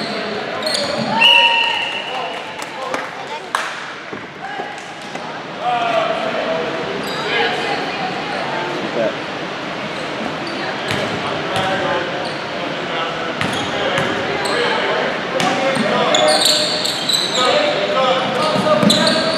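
Basketball bouncing on a hardwood gym floor with repeated sharp thuds, echoing in a large hall, with players' voices calling out on the court.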